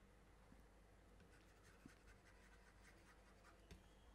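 Near silence: faint scratching and a few light taps of a stylus writing on a tablet.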